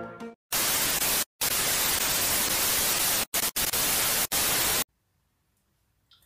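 Loud hiss of static lasting about four seconds, broken by several short silent gaps, then cut off suddenly. The tail of a flute tune ends right at the start.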